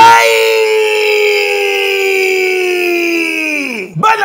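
One long, high howling cry: it rises briefly at the start, is held for nearly four seconds while its pitch slowly falls, then drops off sharply near the end.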